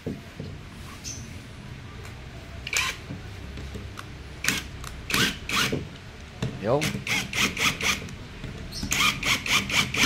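Cordless impact wrench run in short trigger bursts, several a second, tightening the bolts of a ball joint into a Toyota Hiace upper control arm. The bursts start about halfway through, after a few single clicks.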